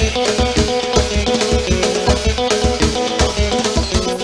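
Live band music played instrumentally through the trio elétrico's loudspeakers: a plucked guitar line over a drum kit with a steady bass beat.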